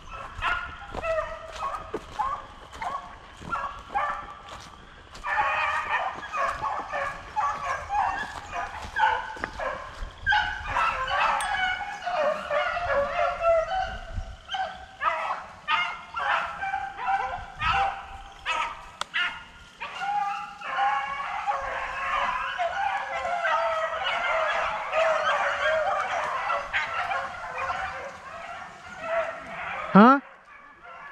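A pack of beagles baying almost without a break, several voices overlapping, as they run a rabbit on its scent trail.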